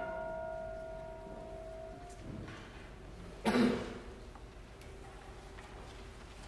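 The final chord of a concert band with brass dies away in the church's long reverberation, its held tones fading out over about two seconds. About three and a half seconds in there is a brief noise, such as a cough.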